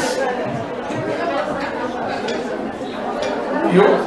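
Low chatter of an audience in a large hall, several voices talking softly at once. A man's voice on the microphone starts up again just before the end.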